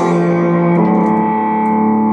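Distorted electric guitar in a blues piece, holding a sustained chord struck at the start, with one of its notes stepping up to a higher pitch about a second in.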